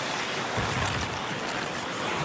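Steady din of an ice hockey arena crowd during play.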